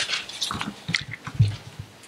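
Paper rustling and handling on a wooden lectern close to the microphone, with scattered clicks and soft knocks; the loudest knock comes about one and a half seconds in.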